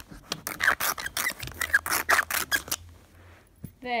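A pencil tip scratched hard and fast across a Nintendo 3DS screen, scoring it. There is a quick run of short scratching strokes for nearly three seconds, then it stops, with a light tap just after.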